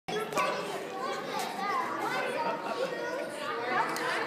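Crowd of young children chattering and calling out at once, with many voices overlapping.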